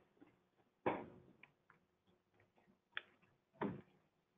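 A few faint, separate knocks and clicks: one about a second in, a short click about three seconds in, and another knock near the end.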